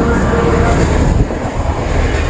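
Loud, steady low rumble with a hiss on top: outdoor street and traffic noise.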